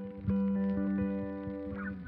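Background music: a gentle plucked guitar piece with held notes changing every fraction of a second.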